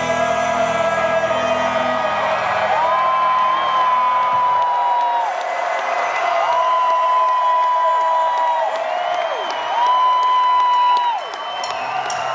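Live rock band playing through a PA. About four seconds in, the low end of the music drops away, leaving three long high held notes, each sliding up into the pitch, holding and then falling off. Crowd whoops and cheers come through under the music.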